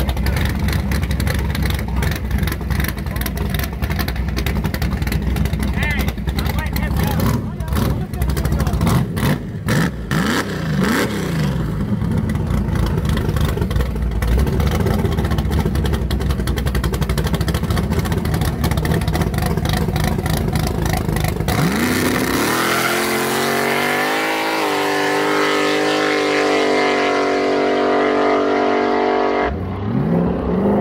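Street drag cars idling with a lumpy, choppy idle and short revs at the starting line. About twenty seconds in, a car launches at full throttle and pulls away hard, its engine note rising in steps through several gear changes before fading near the end.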